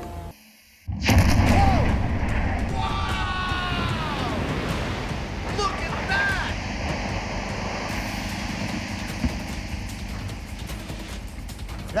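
Large underwater explosion: a sudden heavy boom about a second in, followed by a long rumbling rush of the geyser of water erupting and falling back, slowly fading.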